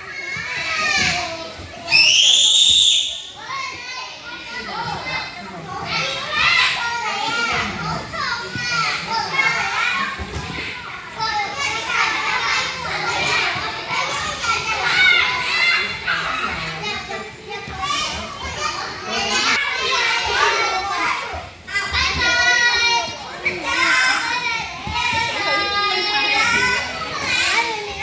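Children playing: many high-pitched young voices shouting and chattering over one another, with a loud shriek about two seconds in.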